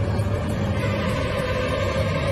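Horror film score: a low, steady rumbling drone with held tones above it, one of them growing clearer about halfway through.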